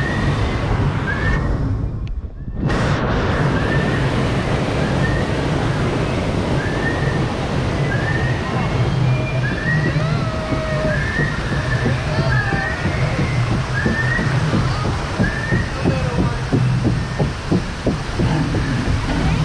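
River-rapids ride raft sliding down a slatted wooden ramp into the water, a steady rumble of rushing water with a short high squeak repeating about once a second. In the last few seconds the raft is in the pool, with choppy splashing and sloshing of water against it.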